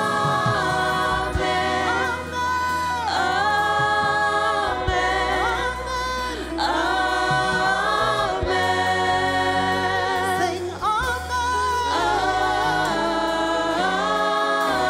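Gospel praise team and choir singing an 'Amen, amen, amen' refrain in harmony, holding long chords that slide into the next, with a sustained low bass underneath.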